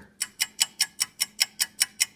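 Ticking clock, fast and even at about five sharp ticks a second.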